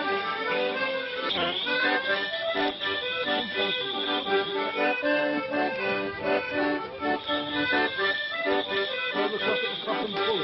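A traditional English Morris dance tune played live on accordions with a fiddle, a brisk, steady-rhythm melody.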